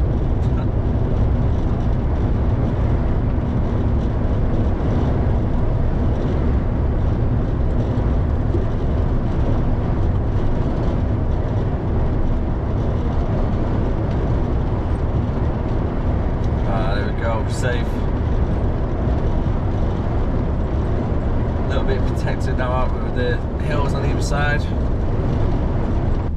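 Steady low rumble of an HGV lorry cruising on a motorway, heard from inside the cab: engine, tyre and wind noise together.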